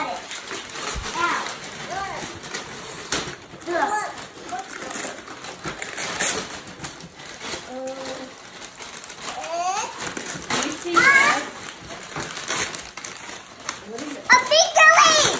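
Wrapping paper crackling and tearing as a present is unwrapped by hand, under scattered children's voices calling out and chattering.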